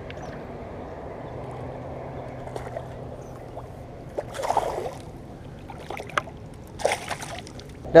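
A hooked largemouth bass splashing at the water's surface while being played in, in two short bursts about four and a half and seven seconds in, over a low steady background.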